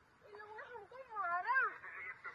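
A person's high-pitched voice raised in long, wavering cries rather than clear words, loudest about a second and a half in.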